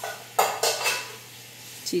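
A short burst of kitchen handling clatter starts suddenly about half a second in, with a few quick follow-up clicks, and dies away within about half a second.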